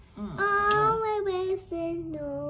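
A young girl singing long held notes, dropping to a lower note near the end of the phrase.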